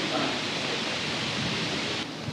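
Steady hiss of hall and recording background noise, with a faint indistinct voice underneath.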